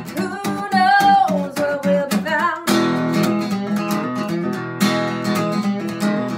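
A woman singing over a strummed Taylor acoustic guitar. Her voice stops about two and a half seconds in, and the guitar strumming carries on alone.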